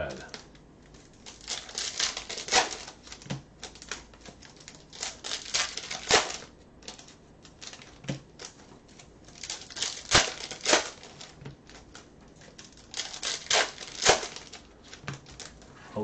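Bowman Chrome baseball cards being flipped through by hand, the cards snapping against the stack in sharp, irregular clicks, with some crinkling between them.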